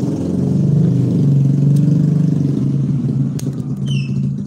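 Low rumble of a motor vehicle engine, swelling to its loudest in the middle and easing off again.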